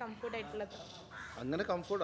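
A crow cawing with harsh calls about a second in, among people's voices talking.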